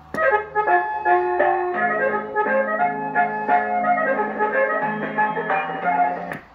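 Background music tune number 3 from the Ranger RCI-63FFC1 CB radio's built-in sound board: a simple electronic melody of steady held notes over a sustained lower note, played through the radio.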